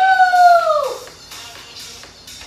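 A woman's loud "woo!" cheer mid-exercise, held for about a second before dropping off, over background workout music with a steady beat.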